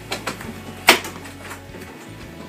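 Footsteps on a hard floor: a few light taps and one sharp knock about a second in.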